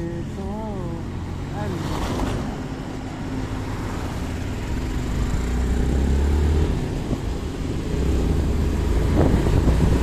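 Motorcycle riding along a road: the engine's low drone mixed with wind buffeting the microphone, the drone growing stronger in the second half.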